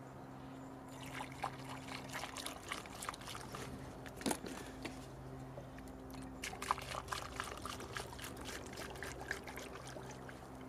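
Lamp oil pouring from a plastic gallon jug through a funnel into a glass oil-lamp font: a faint, uneven trickle that starts about a second in.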